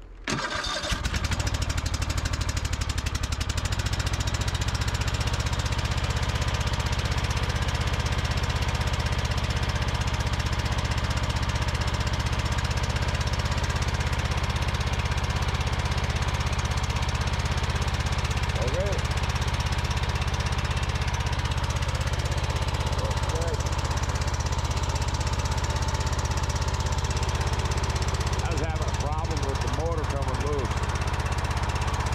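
Air-cooled engine of a Craftsman snowblower starting: it cranks briefly about half a second in, catches within a second, and then runs steadily with a loud, even, low hum.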